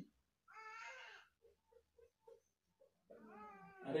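Faint squeaking of a dry-erase marker writing on a whiteboard: one longer squeak about half a second in, then a run of short, evenly spaced squeaks as the letters are stroked.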